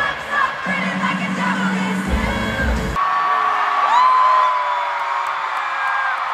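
Stadium concert crowd screaming and cheering over loud amplified live music with heavy bass. About halfway the bass cuts off abruptly, leaving the crowd's long held screams and whoops.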